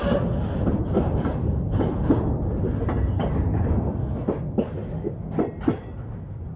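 Freight wagons loaded with steel sections rolling past: a steady rumble with irregular clicks of wheels over rail joints, fading near the end as the last wagon goes by.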